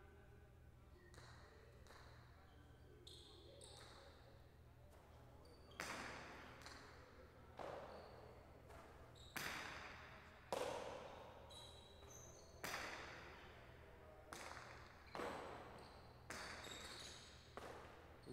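A jai alai pelota cracking against the walls and floor of the court during a rally. Sharp hits with an echo tail come every second or two, starting about six seconds in.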